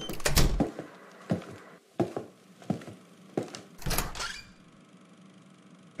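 A series of sharp knocks and thuds, about ten in all, ending in a longer rushing burst about four seconds in.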